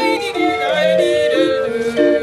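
Hand-cranked barrel organ (street organ) playing a tune in steady piped notes, with a woman singing along over it.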